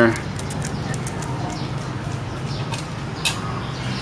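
Dry tinder-ball fibres (bamboo strands from a bird's nest, with kapok) crackling and rustling in the hands as they are packed, in small irregular clicks over a steady low hum.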